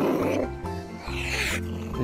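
Soft background music with steady low held notes, together with a cat snarl and hiss: a rough growl trailing off at the start, and a short hiss about a second and a half in.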